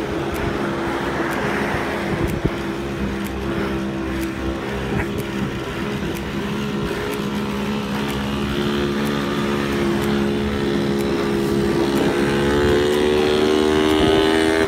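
A motorcycle tricycle's engine running steadily, getting louder and rising slightly in pitch near the end as it draws close.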